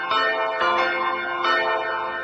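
Church bells ringing, with a new strike about every half second to second over the long ring of the earlier ones.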